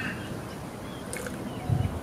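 Outdoor background with birds chirping, and a brief slurp about halfway through as a sample of young fermenting Shiraz is tasted.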